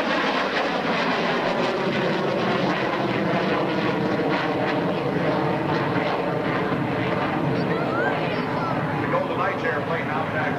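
CF-101B Voodoo's twin Pratt & Whitney J57 jet engines in afterburner as it climbs away, a loud, steady jet roar that holds at one level throughout.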